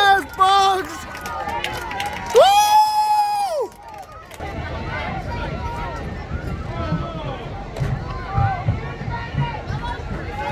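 Crowd of spectators at a football game shouting and talking over one another, with one long, loud held call about two and a half seconds in.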